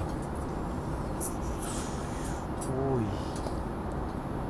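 Steady airliner cabin noise in flight, a constant low rumble and hiss, with a few faint crinkles as a plastic sauce tube is squeezed. A short hum-like vocal sound that falls in pitch comes about three seconds in.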